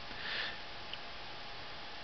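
A short breath or sniff from the narrator near the start, over a faint steady hiss of recording noise.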